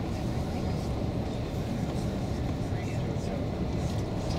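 Steady low rumble of a shuttle bus on the move, engine and tyres on the road, heard from inside the passenger cabin.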